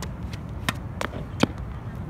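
A tennis ball bouncing and being knocked about in quick succession: a series of sharp taps, the strongest three about a third of a second apart around the middle, over a steady low outdoor rumble.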